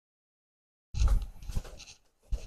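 Rustling and bumping of clothing against a clip-on lavalier microphone as its wearer moves about, starting suddenly about a second in.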